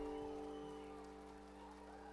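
The final chord of an acoustic bluegrass band, guitar, banjo and upright bass, held and ringing out, fading steadily away at the end of the song.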